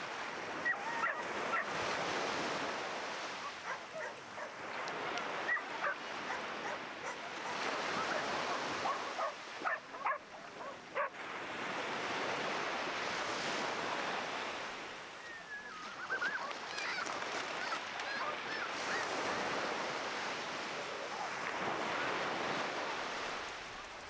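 Small surf breaking and washing up the sand, swelling and fading every few seconds. Dogs bark and yelp in short calls at intervals through it.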